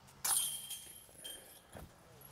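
A thrown disc golf disc hitting a metal chain basket: a metallic clink with jingling ring about a quarter second in, a fainter clink about a second later, and a short dull knock near the end.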